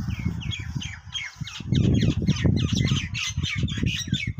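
Birds calling outdoors: a rapid run of short squawking chirps, several a second, growing busier toward the end, over a low, uneven rumble.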